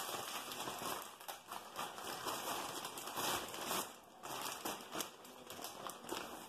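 Plastic packaging crinkling and rustling in irregular bursts of sharp crackles as hands handle the bag and the wrapped handlebar inside it.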